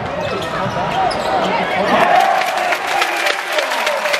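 A basketball bouncing on the court again and again during live play, with voices carrying through a large arena hall.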